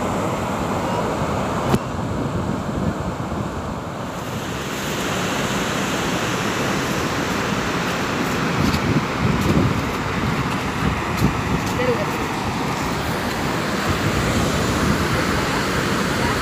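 Wind buffeting the microphone over a steady rush of water pouring over a reservoir dam's spillway.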